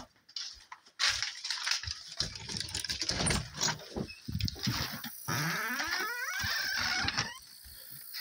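Rustling and knocking from a handheld phone being carried about. Then, about five seconds in, a squeal lasting about two seconds that rises in pitch.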